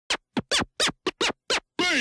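Turntable scratching: about seven quick record scratches, each a short sweep up and down in pitch with brief gaps between them, then a longer sound falling in pitch near the end.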